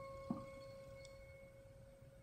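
Soft plucked notes on a nylon-string classical guitar: a clear, pure note rings on and fades, and a second quiet pluck comes about a third of a second in, then everything dies away.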